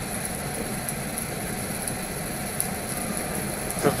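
Steady, even background noise with no distinct events: a low rumble and hiss holding at one level.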